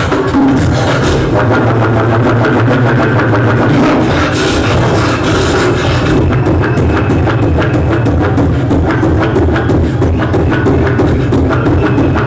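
Live beatboxing amplified through a club PA: a continuous vocal beat with deep bass, turning into a rapid run of sharp clicks from about halfway through.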